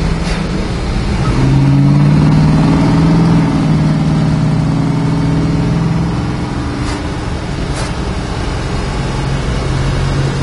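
1963 Dodge Polara's 426 Max Wedge V8 heard from inside the cabin while driving: the engine note swells about a second in, stays loud for a couple of seconds under throttle, then eases back to a steady cruise.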